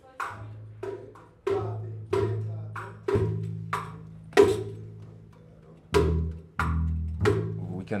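Small acoustic ensemble playing: deep sustained bass notes that change pitch a few times, under a string of sharp plucked and struck attacks coming roughly every half second.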